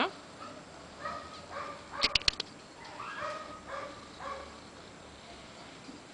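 Kittens mewing in a series of short, high calls, with a quick run of four sharp clicks about two seconds in.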